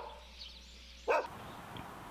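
A dog barking twice in short single barks, one at the very start and one about a second in, over faint outdoor background noise.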